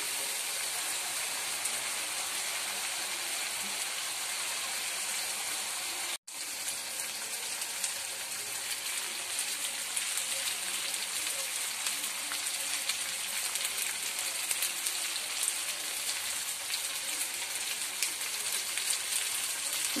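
Hot oil sizzling and crackling steadily in a kadai as chili paste fries in it, being cooked until its raw smell goes. The sound cuts out for a moment about six seconds in.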